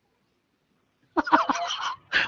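Silence for about a second, then a short burst of a person's voice with no clear words over a voice-chat connection.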